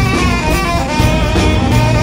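Tenor saxophone playing a melodic jazz line over a live band with drums, bass and keyboard.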